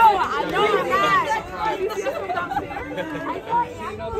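A group of women talking and exclaiming excitedly over one another, with high rising-and-falling cries in the first second or so, then looser chatter.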